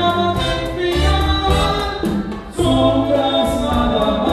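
A male singer sings a bolero live with a dance orchestra of saxophones, brass, congas and drum kit, over a steady percussion tick. The music drops briefly about two and a half seconds in, then comes back in full.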